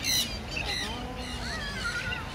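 A flock of American flamingos honking, with a loud burst of calls at the very start and quieter calls after.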